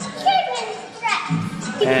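Young girls' voices in a few short bursts of speech with brief gaps between them.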